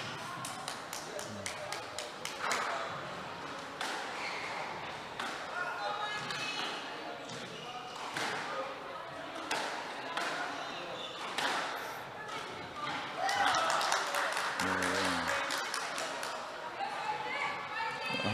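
Squash rallies in a glass-walled court: repeated sharp knocks of racket strikes and the ball hitting the walls and floor, echoing in the hall. Short high squeaks, typical of court shoes on the wooden floor, come between the hits, with faint voices in the background.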